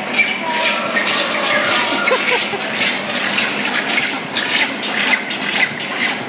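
Water rushing over rocks in a penguin enclosure, a steady loud splashing, with faint voices in the background.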